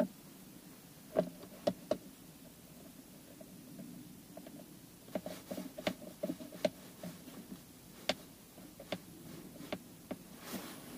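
Scattered light clicks and knocks as a plastic USB and 12 V socket panel is pressed into place and a screw is driven in by hand with a screwdriver. There are a few about a second in, then a run of them in the second half.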